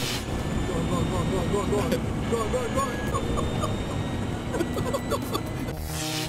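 Two men laughing in quick runs of short "ha" sounds inside a small electric car as it drives along a street, over steady road and wind rumble in the cabin. The car's drive is quiet, with no engine sound.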